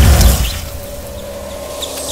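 Logo-reveal sound effects: a deep boom that fades within the first half second, then a steady tone over a high hiss, with a few short glitchy clicks near the end.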